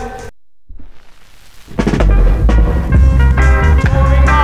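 Instrumental 1970s reggae dub mix: the whole band cuts out about a third of a second in, and after a short silence a hissing wash swells up. The heavy bass and drums come back in near the two-second mark and play on.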